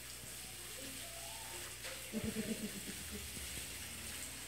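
Garden hose spraying water, a steady hiss, with a few short low vocal sounds a little past halfway.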